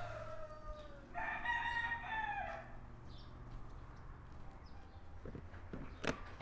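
A rooster crowing: a short falling call at the start, then a longer crow from about one to two and a half seconds in, fairly quiet.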